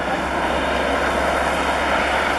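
Caterpillar D8 crawler bulldozer's diesel engine running at a distance, a steady, even drone with no sharp knocks or changes.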